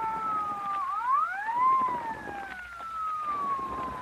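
Police car siren wailing as a radio-drama sound effect: its pitch sinks, swings back up about a second in, then slowly winds down again.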